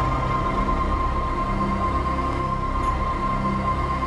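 Programme theme music: a steady held high tone over slow, sustained low notes.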